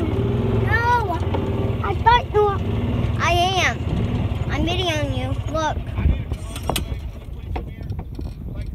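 A golf cart running with a steady low hum, fading slightly near the end. A high-pitched voice rises and falls over it four times.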